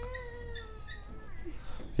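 A single faint, drawn-out animal cry that falls slightly in pitch and fades after about a second.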